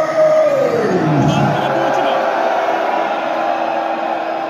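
Concert crowd noise in a large hall. A man's long drawn-out shout falls steadily in pitch over the first second and a half. Then a steady held note continues under the crowd.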